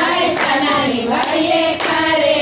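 A group of women singing a Gujarati devotional folk song together, with hand claps.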